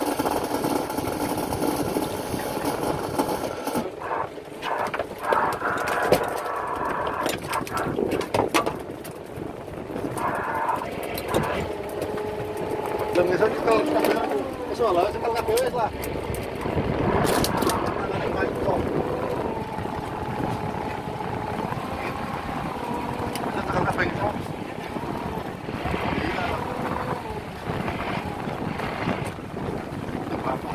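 People talking over the steady running of a fishing boat's engine, with scattered knocks and clicks from work on deck.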